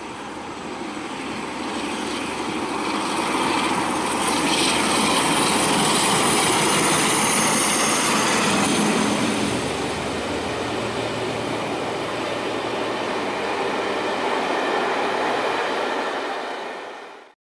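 Locomotive-hauled passenger train passing close by on the line: a steady rush of wheels on rail that builds as the locomotive approaches, is loudest as it goes past, then holds as the coaches roll by.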